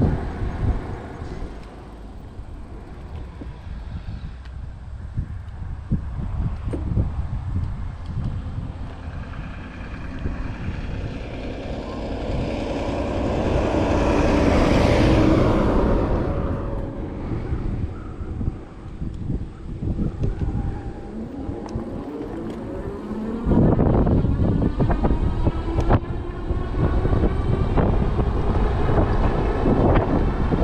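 Wind rumbling on the microphone during an e-bike ride, with a motor vehicle passing: its sound swells to a peak about halfway through and then fades. A little after two-thirds of the way in, the wind noise suddenly gets louder and stays up.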